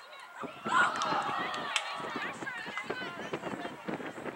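Players and spectators calling out across a soccer field, with one loud shout about a second in.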